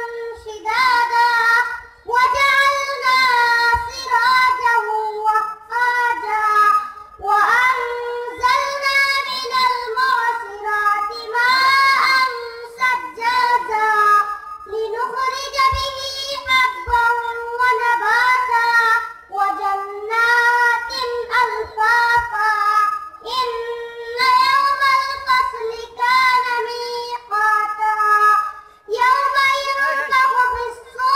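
A young boy's high voice reciting the Quran in melodic tilawat, drawing out long chanted phrases several seconds each with short pauses for breath between them.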